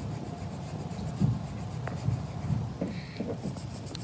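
Colored pencil shading on sketchbook paper: the soft, steady scratch of the lead rubbing back and forth, with a small knock about a second in.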